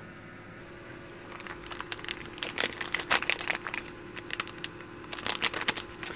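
Small plastic bag crinkling and crackling as it is picked up and handled, an irregular run of crackles starting about a second and a half in.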